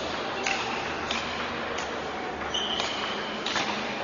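A table tennis rally: the ball is struck by the paddles and bounces on the table, about six sharp clicks in even succession, some with a brief ringing ping, in the echo of a large hall.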